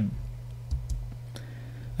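A few light, separate clicks in a pause of the talk, over a steady low hum.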